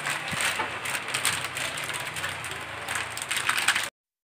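Plastic packaging rustling and crinkling as a new vacuum storage bag is pulled out and unfolded by hand: a run of short, irregular crackles. It cuts off suddenly near the end.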